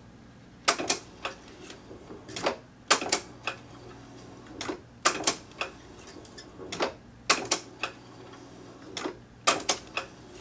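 Akai GX-77 reel-to-reel deck's transport being operated: its buttons are pressed again and again, and each press is met by a quick cluster of mechanical clicks and clunks, about every two seconds. A low steady hum runs underneath.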